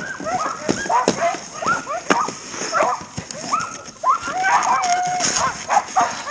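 A team of Alaskan huskies hitched to a dog sled, barking and yipping excitedly: rapid, overlapping short yelps with one longer whine about five seconds in. This is the eager pre-start clamour of sled dogs held on a stay and wanting to run.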